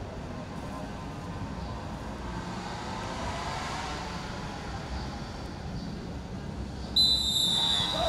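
Referee's whistle blown once for the kick-off, a single short high blast of just under a second near the end, over steady background noise.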